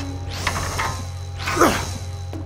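Cartoon sound effect of a large mechanical socket tool ratcheting round as it turns a big hex nut, in two turning strokes, the second about a second after the first.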